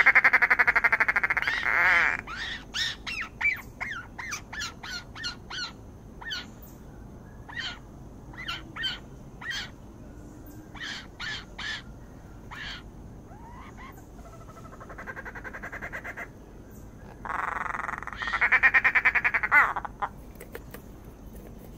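Blue-bellied rollers calling: a long, harsh, rapidly pulsed rasping call at the start, a run of short sharp calls after it, then a softer rasp and a second loud rasping call near the end.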